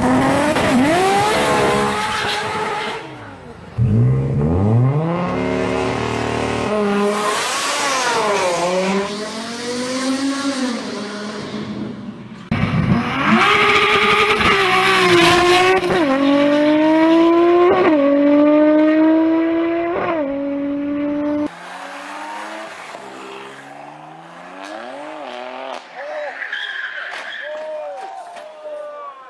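Tuned Audi S3's turbocharged four-cylinder engine revving hard, then accelerating at full throttle through several gears: the pitch climbs and drops sharply at each upshift, over a loud rush of intake and exhaust noise. In the last few seconds another car's engine revs with tyre squeal.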